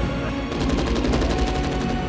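Rapid automatic gunfire from several weapons, a fast run of shots starting about half a second in, echoing off hard tiled walls.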